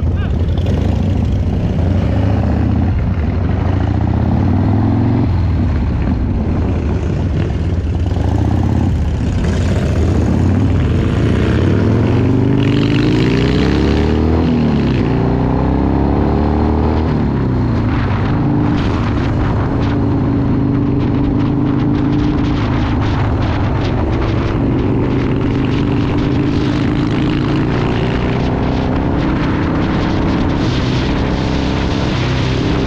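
1997 Harley-Davidson Dyna Low Rider's 1340 cc Evolution V-twin running as the bike pulls away and accelerates up through the gears, the pitch climbing and dropping at each shift. About eighteen seconds in it settles into a steadier cruise.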